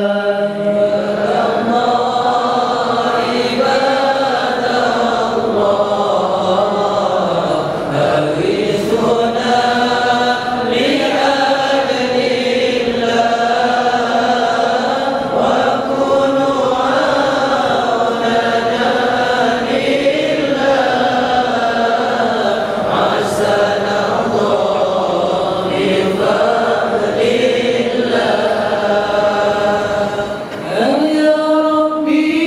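A congregation of men chanting an Arabic devotional qasidah together, one slow melodic line held on long, gliding notes.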